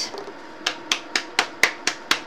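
A silicone resin mold being spanked: six sharp slaps at about four a second, starting just under a second in, to knock excess mica powder out of the mold.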